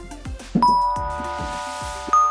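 A bright bell-like chime in background music, struck once about half a second in and ringing on as it slowly fades. A soft hissing swell rises toward the end.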